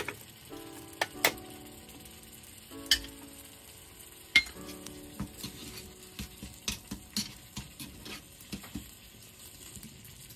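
Miniature steel pots and a small metal spoon clinking sharply a few times, then the spoon tapping and scraping quickly around a tiny steel pan of tomato soup as it is stirred, over a low steady hiss.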